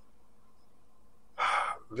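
Quiet room tone, then about a second and a half in a man's short, sharp in-breath, taken just before he speaks again.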